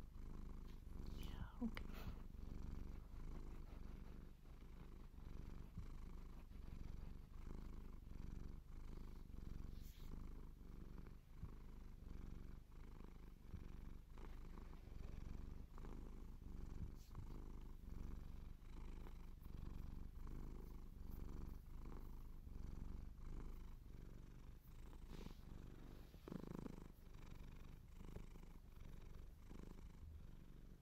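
A cat purring steadily, the low purr rising and falling in a regular rhythm.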